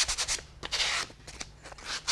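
A sheet of sandpaper rubbed by hand along the edge of a small block of scrap wood, in quick, uneven back-and-forth strokes, smoothing the cut edges.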